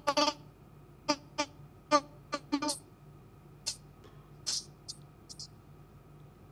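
A man's voice breaking up over a failing video-call connection: short clipped fragments of speech with dropouts between them, then a few brief high-pitched blips about halfway through. The host blames a poor line.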